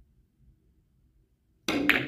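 Quiet room tone, then near the end a carom billiards stroke: two sharp clicks close together as the cue strikes the cue ball and the balls collide, with a brief ring.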